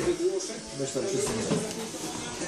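Indistinct background speech that runs on without clear words, with a television playing in the room.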